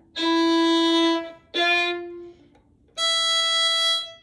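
Violin playing three separate bowed notes, each held about a second: E and then F natural on the D string, then E an octave higher on the E string.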